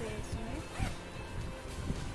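A zipper on a nylon backpack being pulled open in a couple of short runs, over background music.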